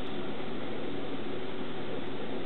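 Steady, even hiss with a faint low hum, unchanging and with no separate events: a constant machine or room noise such as an equipment fan.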